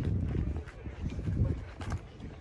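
Wind buffeting the microphone: an uneven low rumble that is strongest for the first second and a half and then eases.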